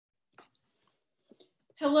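A few faint, short clicks in near quiet, one about half a second in and two more close together past the middle, then a woman starts speaking just before the end.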